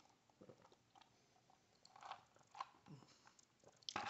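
Near silence with a few faint, brief mouth sounds of a person sipping an iced drink and swallowing.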